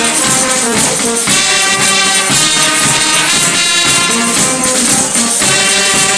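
A Limburg carnival brass band (zate hermeniek) playing a tune: trumpets, trombones and saxophone over bass drum and snare drum.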